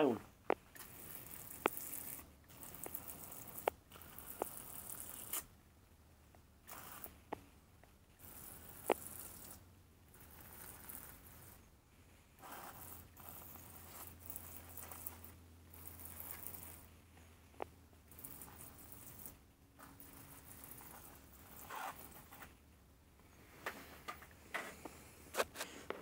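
Garden hose spray nozzle sprinkling water over compost in a plastic seed tray, damping it down before sowing. It comes as short hissing bursts of a second or two with brief pauses between, and a few faint clicks.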